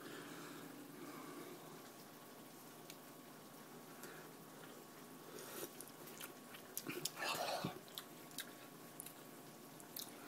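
Faint mouth and spoon noises of someone tasting hot soup from a spoon: a few small clicks and one short noisy sip-like sound about seven seconds in, over a steady faint hum.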